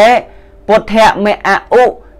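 A single voice chanting Pali verses in a steady, even-pitched recitation. One syllable ends just after the start, and after a short pause a quick run of syllables follows.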